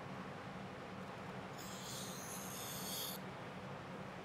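Razor knife blade drawn across a vinyl decal's paper backing, slicing it off: a faint, high scratchy hiss lasting about a second and a half, starting a little before halfway through.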